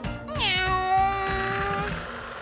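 A high, voice-like note that swoops down and then holds steady for about a second and a half, over background music.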